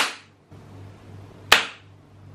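Two sharp hand claps, about a second and a half apart.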